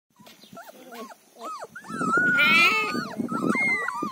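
A litter of Mudhol hound puppies, about three weeks old, whining and whimpering together, many high thin cries overlapping. The cries are faint at first and grow louder and denser from about two seconds in.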